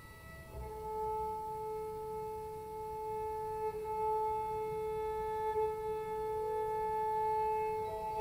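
Cello bowed in a long, held high note that begins about half a second in and sustains steadily, with a clear overtone ringing above it.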